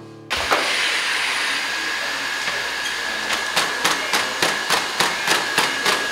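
A four-legged walking robot running: a steady motor whir with a thin high whine, and from about halfway in, quick regular taps of its feet on the hard floor, about three or four a second.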